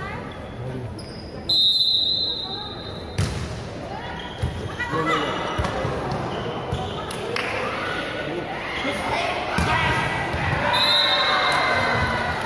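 A referee's whistle gives one long blast about a second and a half in, followed by a volleyball being served and struck several times in a rally. Players and spectators shout through the rally, and a second whistle near the end stops play.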